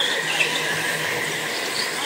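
Go-karts running through a turn, with a few short tyre squeals on the smooth track floor over a steady motor whine.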